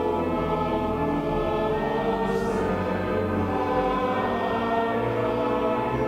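Church choir singing a slow hymn with organ accompaniment, in long held chords.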